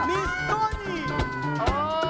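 Drawn-out, high-pitched cat-like cries, several at once, each rising and then held. A second set starts near the end. Background music with a beat plays under them.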